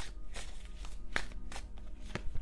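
A deck of tarot cards being shuffled by hand: a string of short, irregular papery snaps and flicks, about three or four a second.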